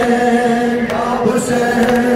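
A male noha reciter leads a mourning chant through a microphone, with a crowd of mourners chanting along in long, steady held notes. Sharp slaps sound roughly once a second: hands beating on chests in matam.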